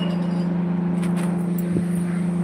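A steady low mechanical hum, constant in pitch and level, with a few faint clicks about a second in and near the end.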